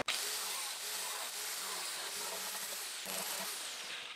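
Angle grinder running steadily while grinding off plastic locating features on a 3D-printed part, heard as an even whirring hiss.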